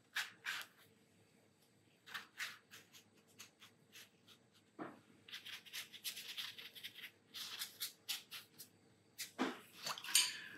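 Watercolour brush working on mixed-media paper: faint, soft brushing and dabbing strokes, a few at a time at first and coming more thickly in the second half.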